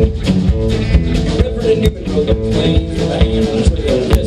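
A live alt-country band playing: electric guitar, upright bass and pedal steel over drums keeping a steady beat.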